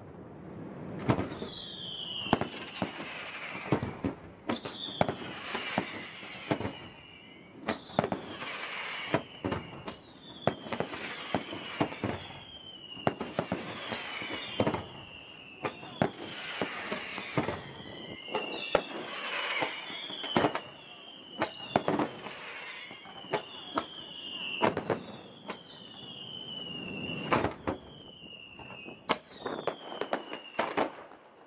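Fireworks display: a rapid, irregular series of bangs, with a short whistle that falls in pitch recurring every second or two as shells go up.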